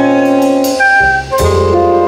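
Small jazz band playing live: trombone and saxophones hold sustained notes in harmony over double bass, guitar and drums with light cymbal strokes. The horns move to new chords twice, with a brief dip in level between them.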